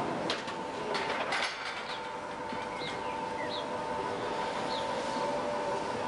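Workshop hall sound under a railcar being lowered onto its bogies: a steady electric hum, a few sharp metal clanks in the first second and a half, and short high chirps about once a second.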